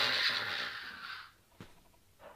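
A man's long mouth-made 'pshhh' hiss, like a mock impact blast, fading away over about a second, followed by a faint click.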